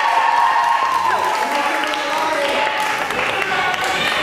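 An audience of children clapping, with one voice holding a long cheer over the applause that fades out about two seconds in.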